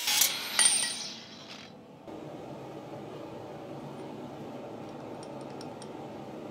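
Angle grinder cutting through steel bar stock, with a brief high metallic ring about half a second in; the grinder stops and winds down within the first two seconds, leaving a steady low hum with a few faint ticks near the end.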